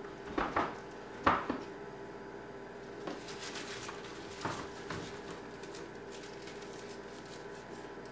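Vegetables being handled in a plastic storage bin: a few knocks of onions and potatoes against each other and the plastic, the loudest about a second in, then light crinkly rustling with two more soft knocks near the middle.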